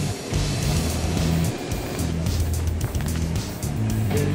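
Background music with a bass line and a steady drum beat.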